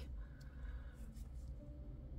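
Quiet room tone with a steady low hum and a faint click about half a second in.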